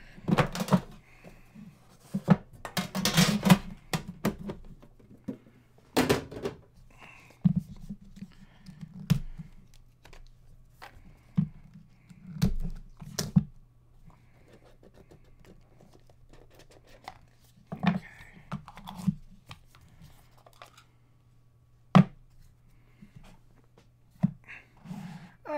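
Hands opening a cardboard trading-card box: irregular scrapes, rustles and knocks as the box is handled and its flap pulled open, with a longer stretch of scraping about three seconds in. A sharp knock near the end comes as the stack of cards is taken out.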